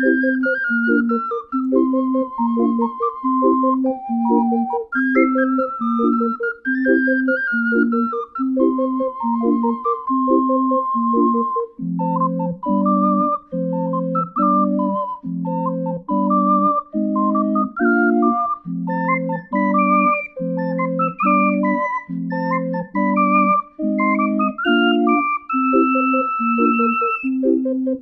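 Instrumental background music: a steady bass pulse of about two notes a second under a bright melody line, the accompaniment growing lower and fuller about halfway through.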